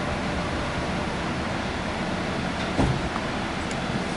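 Steady running rumble inside the cabin of the AirTrain JFK people-mover, with a single low thump about three seconds in.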